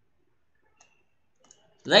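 A few faint, short clicks of a stylus tapping on a pen tablet as the equation is written, then a man's voice starts near the end.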